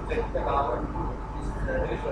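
Indistinct speech over a steady low hum.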